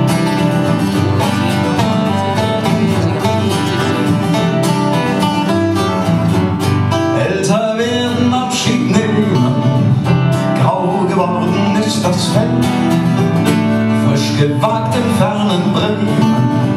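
Live acoustic folk music from a trio, led by strummed and picked acoustic guitars.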